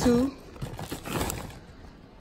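Plastic bag of shredded mozzarella crinkling and rustling as the cheese is shaken out of it into a bowl. The rustle is irregular and fades toward the end.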